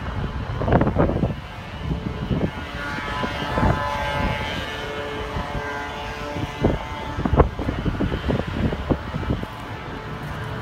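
Wind buffeting the microphone in irregular gusts, with a few sharper blasts, over a steady hum of distant road traffic.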